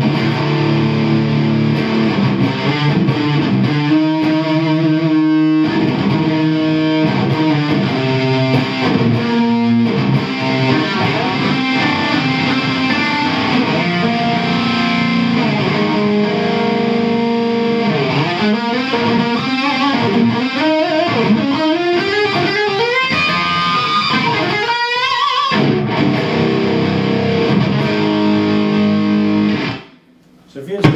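Electric guitar played through a Rocktron Piranha all-tube preamp on its modern, highest-gain setting with the gain wide open: heavily distorted riffs and held chords. In the second half come string bends and a rising slide up the neck. The playing cuts off abruptly just before the end.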